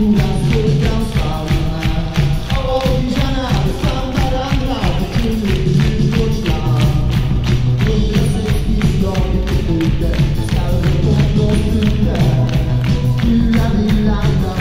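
Live rock band playing the song loud, with a steady driving beat, electric guitar and a singing voice, heard from inside the concert crowd.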